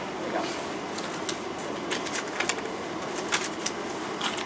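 Steady background noise in a small shop with scattered short clicks and rustles, as of handling things at the counter and shelves.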